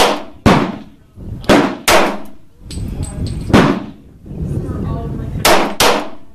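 Sarsılmaz SAR9 METE 9mm semi-automatic pistol being fired, about seven sharp shots each with a short ringing tail: two quick shots at the start, two more around one and a half to two seconds in, a single shot a little past the middle, and a quick pair near the end.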